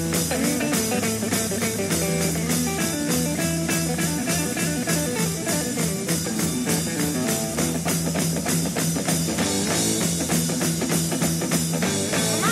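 Blues-rock band playing an instrumental passage: electric guitar over bass and a steady, driving drum-kit beat.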